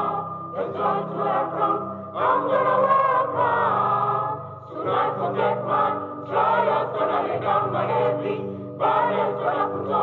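Church choir of men and women singing together, many voices in sung phrases broken by short pauses.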